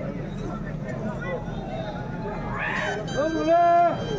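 Wrestling spectators chattering, with one voice letting out a loud, drawn-out shout on a steady pitch for most of a second near the end.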